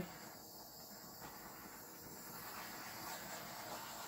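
Small handheld butane torch hissing faintly and steadily as it is passed over wet acrylic paint, growing slightly louder toward the end.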